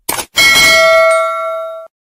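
Subscribe-button sound effect: a short click, then a bright bell ding that rings on, slowly fading, and is cut off sharply after about a second and a half.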